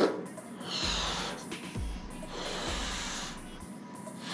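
A person blowing up a balloon by mouth: two long breaths forced into it, with a pause for breath between them.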